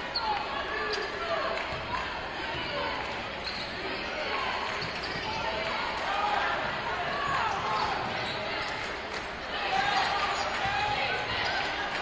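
A basketball being dribbled on a hardwood gym floor, over steady crowd voices echoing in the gym.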